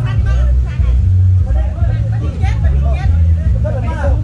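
Several people talking over crowd hubbub, with a loud, deep, pulsing bass underneath.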